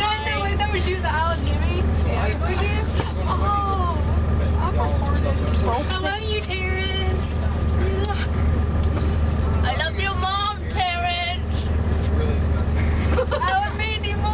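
Steady low drone of a coach bus's engine and road noise, heard from inside the passenger cabin, with passengers' voices over it.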